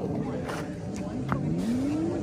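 Indistinct voices of people talking, rising and falling in pitch, over background noise.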